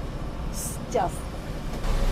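Steady low rumble of street traffic, with a short high hiss about half a second in.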